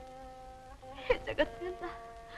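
Held, buzzy notes of a background film score, changing pitch twice. Around the middle they are broken by a few short, loud cries from a weeping woman.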